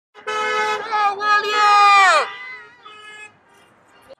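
Goodbye-parade car horns honking and a loud, drawn-out cheer that drops in pitch as it ends about two seconds in, followed by fainter calls.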